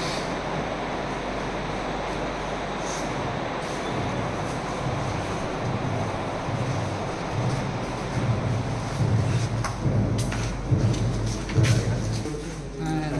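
A steady rushing noise. In the last four seconds it is joined by irregular low thumps and a few sharp clicks.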